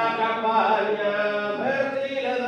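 Sardinian canto a tenore: four male voices singing in close harmony over a steady low drone, the chord sliding up in pitch about half a second in and again near the end.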